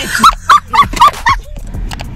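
A woman's loud, high-pitched laughter: about five short 'ha' bursts in quick succession, stopping about a second and a half in.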